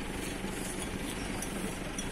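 Truck engine idling steadily: a low, even running sound.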